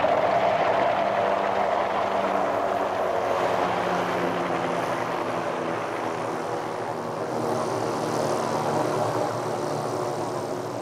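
AH-1 Cobra attack helicopter flying low, its rotor and turbine running steadily and slowly growing fainter.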